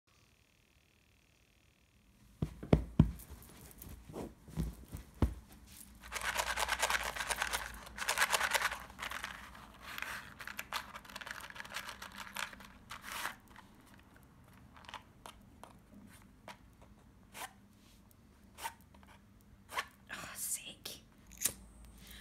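Close-miked handling of a large cardboard matchbox: a few heavy thumps early on, two longer bursts of tearing and crinkling about six and eight seconds in, then scattered light taps and clicks.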